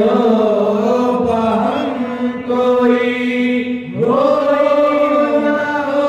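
Male qawwali singers chanting together in long, drawn-out held notes, the slow opening of a Sufi kalam. The voices break and slide up to a new note about four seconds in.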